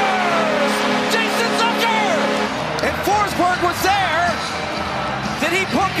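An arena goal horn sounds as one steady chord over a cheering crowd, then cuts off about two and a half seconds in. The crowd keeps cheering after it, with music and voices over the noise.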